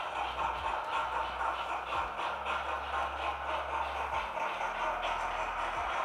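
Two Hornby model steam locomotives running together on the track, their HM7000 sound decoders playing steady steam chuffing as they move off under one throttle.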